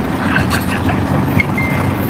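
Steady road rumble inside a moving car, with people talking over it, coming from a played-back vlog.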